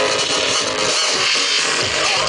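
Loud electronic dance music from a live set over a sound system, heard from the dance floor, with a steady kick drum about twice a second.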